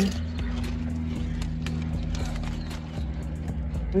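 Chewing crunches of a ghost pepper tortilla chip, a run of sharp, irregular crackles, over a steady low hum in a car cabin.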